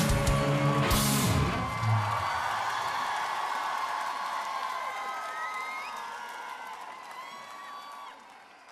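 A live rock band's closing chord: drums, bass and guitars stop together with a cymbal crash about a second and a half in. Guitar feedback and cymbal ring on, with a cheering crowd, slowly fading out.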